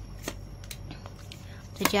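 Tarot cards being handled and drawn from the deck: a few light, sharp card flicks and taps spread out over about two seconds. A woman's voice starts speaking near the end.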